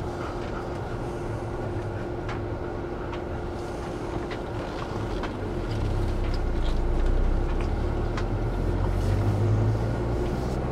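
Cabin noise of a Ford Bronco on the move: steady engine and road rumble with a constant hum, growing louder about halfway through.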